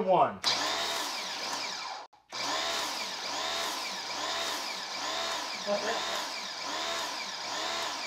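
Toolcy electric pressure washer driving a foam cannon with a 1.1 orifice: the motor-pump starts, cuts out briefly about two seconds in, then runs on with a regular pulsing. The orifice is too small for the washer, which keeps shutting off under it.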